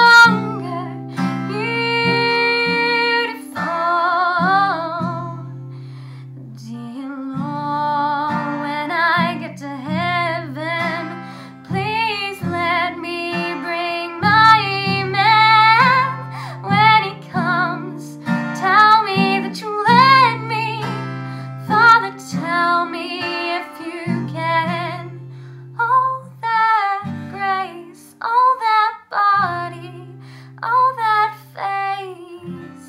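A teenage girl singing solo while strumming her own acoustic guitar, which has a capo on its neck. The sung phrases have long held, wavering notes over steady chords, with brief pauses between phrases.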